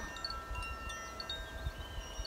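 Small hand bell ringing, several clear high tones sustaining and slowly fading. Wind rumble on the microphone underneath.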